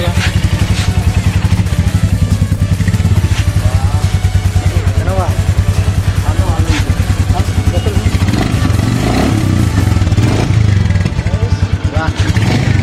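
Royal Enfield Meteor 350's single-cylinder engine idling with an even beat, about seven pulses a second.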